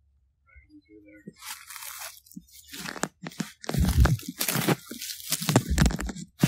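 Footsteps crunching through dry leaf litter, starting about a second in and getting louder, with a couple of heavy thuds toward the end.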